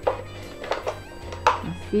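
Scissors snipping through a clear plastic bottle, a few short sharp cuts with the loudest about one and a half seconds in, over steady background music.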